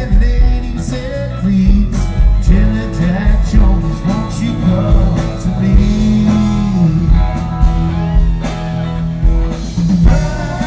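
Live rock band playing an instrumental passage between sung verses: electric guitars, bass and drums, loud and full, with a low-pitched lead line that bends and slides between notes.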